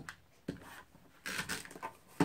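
Handheld adhesive tape runner pressed and drawn across cardstock: two short strokes of scratchy noise, with a click at the start and another near the end.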